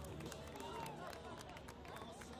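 Indistinct chatter of spectators and players around an outdoor beach volleyball court, with scattered light clicks.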